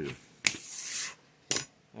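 A paper scratch-off lottery ticket being handled and slid off a tabletop mat: a sharp tap about half a second in, a short brushing rustle, then another sharp tap near the end.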